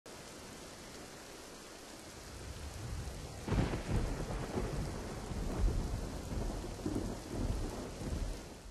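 Steady rain with thunder: a loud thunderclap about three and a half seconds in, then rolling rumbles that keep coming over the rain.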